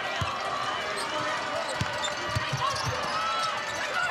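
A basketball being dribbled on a hardwood court, several separate bounces at an uneven pace, over the steady background noise of an arena.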